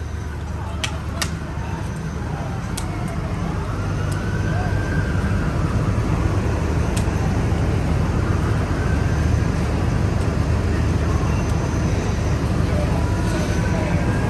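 Fire engine running at the fire scene: a steady low engine drone that grows louder about four seconds in, with a siren faintly wailing up and down a few times. A few sharp clicks sound in the first seconds.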